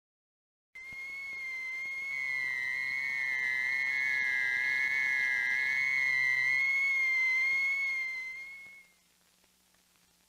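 Logo music: a single high electronic tone with a slowly wavering, theremin-like pitch. It swells in about a second in and fades out near the end.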